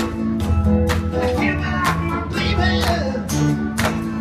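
Live rock band playing with electric guitar and bass over a steady drum beat.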